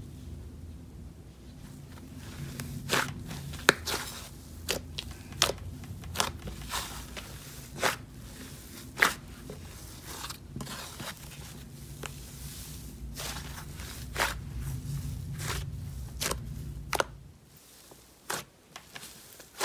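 Hands squishing and stretching a soft white slime, giving irregular sharp clicks and crackles. A low steady hum sits underneath and stops shortly before the end.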